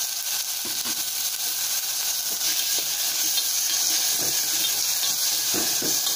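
Onions, green chillies and freshly added tomato pieces frying in an aluminium pot: a steady sizzling hiss.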